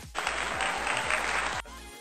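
A burst of applause, about a second and a half long, that starts and cuts off abruptly, laid over electronic dance music with a steady beat.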